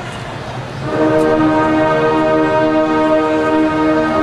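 A large marching band's brass and woodwinds come in about a second in with a loud, sustained chord of many notes, held steady. Before it, a low murmur of the stadium crowd.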